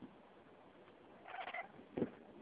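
Maine coon cat giving one short, high call about a second and a half in, followed by a sharp click at the very end.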